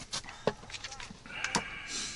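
Tableware and cutlery knocking on a small camp table: a sharp clink about half a second in and another near the end, with a short rustling hiss between them.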